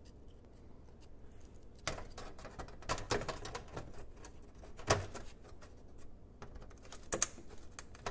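Bolts being hand-tightened into a plastic engine underbody shield: a few scattered sharp clicks and light scrapes of tool and fastener, with a small cluster about three seconds in.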